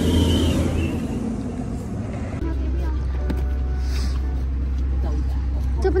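A bus engine running close by: a steady low drone that shifts lower and evens out about two and a half seconds in.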